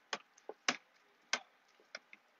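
A stirring utensil knocking against the side of a cooking pot while crab and shrimp are folded into a thick cheese sauce: about five short, sharp, irregular clicks.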